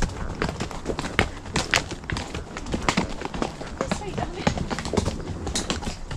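Hooves of ridden horses striking a hard, stony dirt track: an irregular run of sharp clops from more than one horse.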